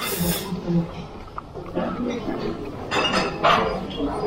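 Close-up eating sounds: a fork clinking and scraping on a plate, and chewing and mouth noises, with a short sharp clatter at the start and a noisier stretch about three seconds in.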